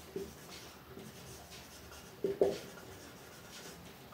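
Marker pen writing on a whiteboard: faint strokes, with two short, sharp squeaks a little over two seconds in.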